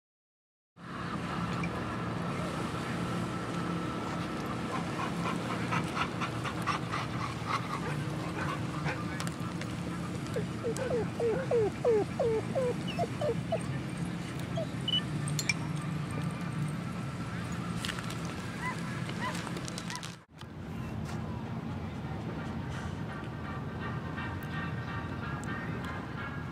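Open-air ambience with distant music playing, and a quick run of short rising-and-falling animal calls about ten seconds in. The sound cuts out for a moment about twenty seconds in.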